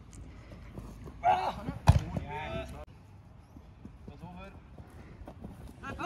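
Short shouted calls from players on the field, a few quick bursts of voice, with one sharp loud thump about two seconds in and a quieter stretch after the third second.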